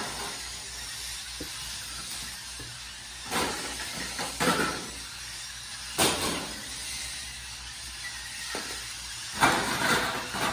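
A VEX competition robot driving across the field, its motors and wheels making a steady whirring hiss, with four louder, sudden bursts of mechanical noise about three and a half, four and a half, six and nine and a half seconds in as it handles balls and moves between goals.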